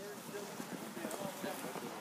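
Low, indistinct voices of several people talking among themselves, no single voice standing out.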